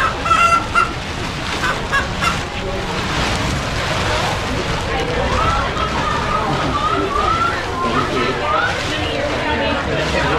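A man imitating a chicken: short squawks near the start, then a long wavering squawk through the second half. Under it runs a steady rush and the rustle of an inflatable chicken costume being pushed through a doorway.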